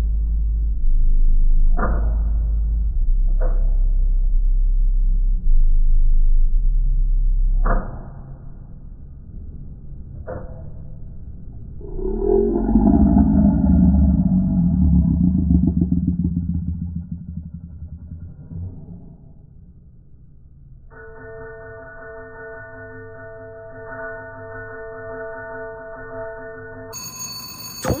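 Mechanical-reel slot machine spinning with a low hum, its reels landing one by one with sharp snaps. A swelling, wavering sound then rises and fades. From about two-thirds of the way through, a steady ringing tone of several pitches sounds, the machine's jackpot alert after the reels land on a $12,000 win.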